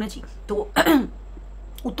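A woman clears her throat once, briefly, a little under a second in, during a pause in her talk.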